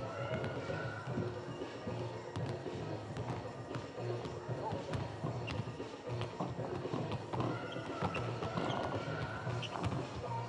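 Arena PA music playing through a large, near-empty hall, with scattered basketball bounces from players warming up on court.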